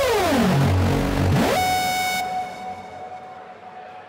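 Techno breakdown in a DJ set: a synthesizer tone dives steeply down in pitch over the first second and a half, sweeps briefly back up, then settles into a steady held synth note that gets quieter about halfway through, with no beat underneath.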